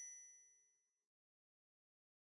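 The last bell-like chime of a logo jingle ringing out and fading away within the first second, followed by total silence.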